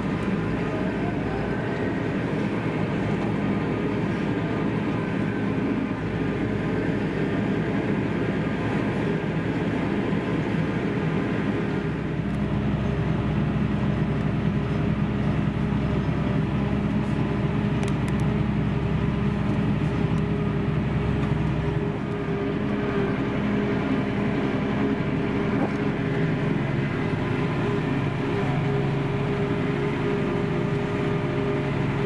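Massey Ferguson tractor's diesel engine running steadily, heard from inside the cab. A deeper drone comes in for about ten seconds in the middle.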